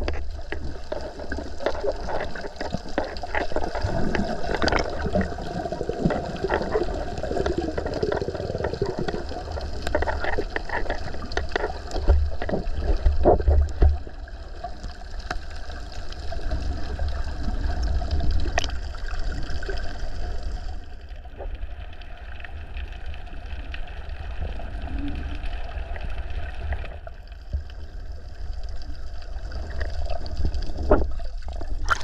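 Water gurgling and sloshing with scattered small splashes, over a steady low rumble.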